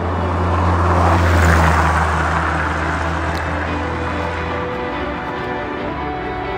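A road vehicle driving past: its engine and tyre noise swells to a peak about a second and a half in, then fades away, with a low hum that drops out near the end. Background music plays underneath.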